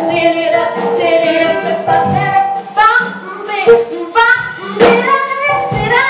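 Live jazz-blues band playing, with a woman singing lead over drums, electric keyboard and guitars; drum hits punctuate it throughout.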